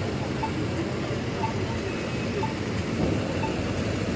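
Steady street traffic noise, with a short electronic beep repeating about once a second.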